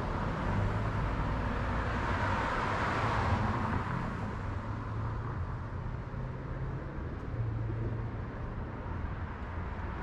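Road traffic: a car passes, its tyre and engine noise swelling to a peak about three seconds in and then fading, over a steady low hum of other traffic.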